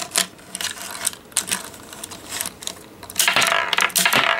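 Small plastic clicks as a marble is pressed into a B-Daman Strike Cobra marble-shooter toy. About three seconds in comes the shot: the marble clatters and rolls across the tabletop in a quick run of rattling clicks.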